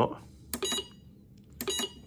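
ITBOX i52N Lite punch card time recorder giving two short electronic beeps about a second apart as its setting buttons are pressed.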